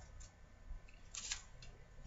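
Faint paper rustling as mail and envelopes are handled, in a couple of brief soft bursts.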